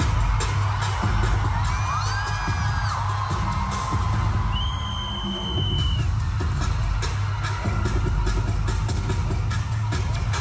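Live pop music played loud over an arena sound system, with a heavy bass beat, and the crowd cheering along with a few high held screams in the first half.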